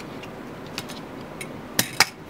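A few light clicks from a snap-off utility knife and a steel dial caliper being handled on a cutting mat while masking tape is cut, with one sharp clack near the end.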